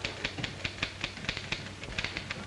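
Manual typewriter keys clacking in a quick, uneven run of about six strokes a second.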